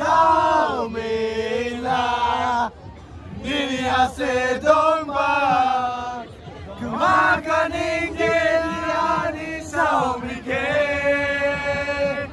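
A group of young men chanting loudly together in chorus. Their long, drawn-out notes slide in pitch, in phrases of a few seconds with brief breaks between them.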